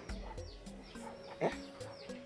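Quiet background film music with faint held tones, and one short voiced sound about one and a half seconds in.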